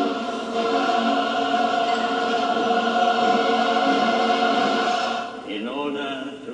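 Choral film music: a choir holding long, steady chords, with a man's voice starting to speak near the end.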